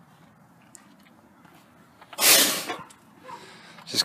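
A single hard puff of breath blown through a cardboard tube to blow dust out of a car trunk, a loud rushing burst about half a second long a little past the middle.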